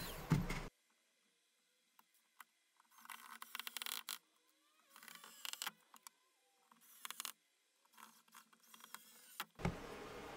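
Small cordless electric screwdriver running faintly in several short bursts, each under a second, as it drives screws to fix aluminium T-track into a plywood sled.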